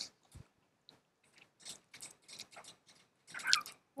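Faint scattered clicks and light handling noise from a laptop motherboard being turned over by gloved hands, with a slightly louder short rustle near the end.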